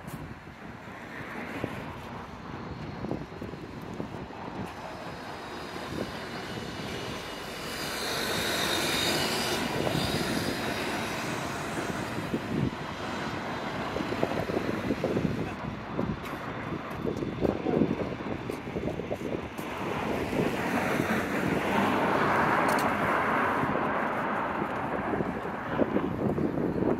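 Street traffic ambience with motor vehicles passing by. It swells to a louder pass about eight to ten seconds in, with a faint high whine, and builds again around twenty-two seconds.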